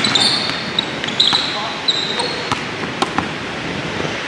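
Basketball dribbled on a hardwood gym floor, bouncing at irregular intervals, with short high sneaker squeaks in the first couple of seconds.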